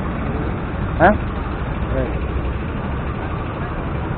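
Motorcycle engine running with a steady low rumble, with a short spoken word about a second in.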